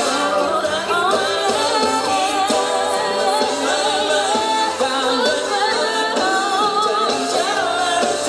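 Live pop band performance: male and female vocalists singing, with the voices most prominent over electric guitars, bass and drums.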